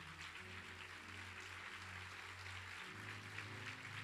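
Faint low notes held on an electronic keyboard, changing pitch twice, over a steady room hiss.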